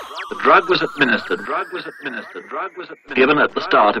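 A voice speaking over a thin, slowly rising tone that ends about three seconds in.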